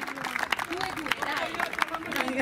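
People talking close to the microphone, with scattered sharp clicks in the background.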